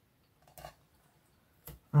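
Faint handling sounds of double-sided tape being applied to a cardstock piece: a soft rustle about half a second in and a short sharp click just before two seconds.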